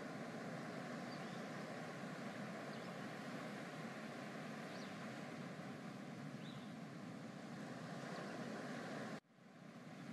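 Beach ambience: a steady wash of surf and wind with a few faint, high, distant cries like seagulls. It cuts off abruptly about nine seconds in and comes back more quietly.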